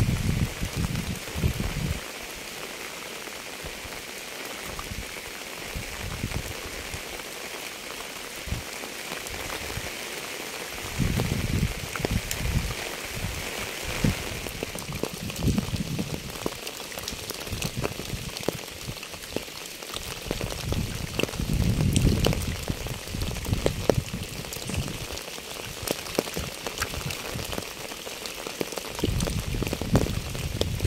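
Steady rain falling on a wet path, puddles and fallen leaves, with many distinct drop ticks through an even hiss. Low rumbles come and go near the start, about a third of the way in, around two-thirds of the way through and again near the end.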